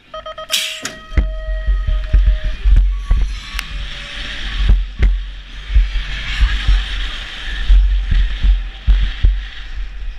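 BMX start-gate tone held for about two seconds, with a sharp clack as the gate drops about half a second in. After that, heavy wind buffeting on a helmet camera and tyre rumble as a BMX bike sprints off the start hill and down the track.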